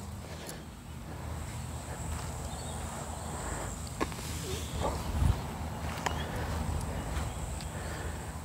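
Wind rumbling on the microphone on an open grass field, with a faint steady high-pitched tone above it. A few faint clicks and one dull thump about five seconds in stand out of it.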